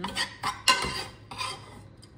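A metal kitchen utensil scraping and clinking against cookware in three short bursts, with a sharp clink about two-thirds of a second in.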